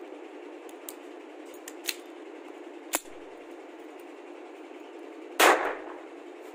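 A .30 bore pistol firing a single film blank cartridge: one loud, sharp shot with a short ringing tail about five and a half seconds in. Before it come three light clicks from the pistol being handled.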